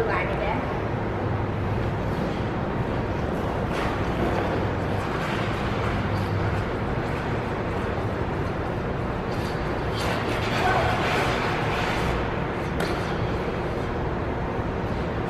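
Figure skate blades gliding and scraping on rink ice as a skater strokes and turns into a spin, over the steady background noise of an indoor ice rink, with a few sharper scrapes.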